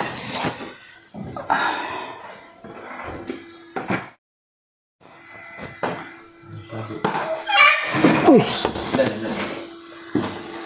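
Indistinct voices with a few knocks and bumps as a man climbs a wooden ladder into a cramped room. The sound cuts out completely for about a second, a little after four seconds in.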